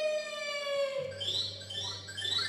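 Baby crying played as a stage sound effect: one long wail that slowly falls in pitch, then short rising cries near the end, with a low steady hum coming in about halfway.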